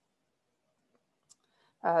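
Near silence broken by a single faint, short click a little past halfway: a computer mouse click advancing the slide. A woman says 'uh' just before the end.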